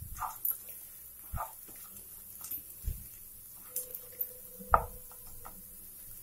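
Wooden spatula stirring a dry vegetable fry in a nonstick pan: irregular soft scrapes and taps against the pan, with one sharper knock about three-quarters of the way through.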